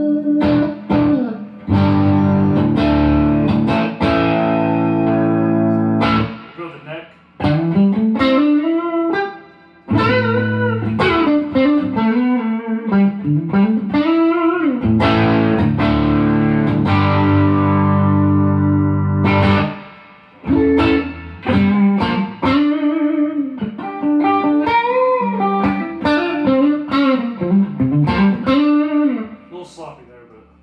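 Music Man Sterling Cutlass electric guitar played through an amplifier. Chords ring for a few seconds at a time, alternating with single-note lines whose notes bend up and down in pitch, with short breaks between phrases.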